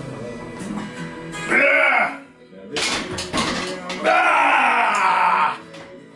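A man yelling with strain during a heavy barbell bench press: a short yell about one and a half seconds in, then a longer, louder yell from about four seconds in. A few sharp knocks fall between the two.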